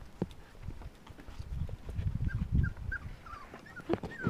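Silken Windhound puppies giving short, high whimpers, a quick string of them in the second half, over a loud, patchy low rumbling.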